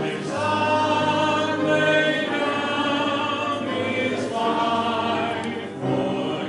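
Church congregation singing a hymn together, in long held notes that change about every second.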